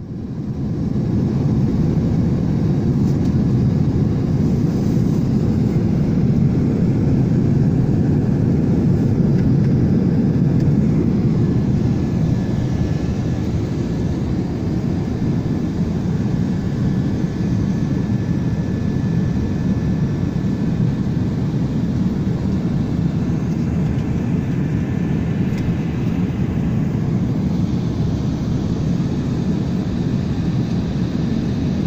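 Airliner cabin noise: a steady, even low rumble of engines and airflow heard from a passenger seat, fading in at the start.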